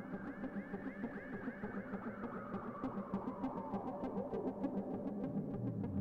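Ambient electronic music played on hardware synthesizers: a fast sequenced pattern of short notes, smeared by delay and reverb, over a steady low drone, with a slow filter sweep that rises and then falls. A deep bass note comes in near the end and slides upward.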